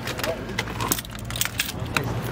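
A bunch of vehicle keys jangling as they are picked up and handled, a scatter of small metallic clicks over a low steady hum.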